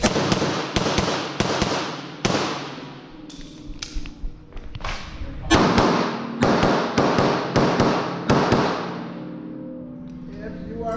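Grand Power X-Calibur 9 mm pistol firing strings of quick shots, many in fast pairs, with a lull around three seconds in. Each shot echoes off the walls of an indoor range.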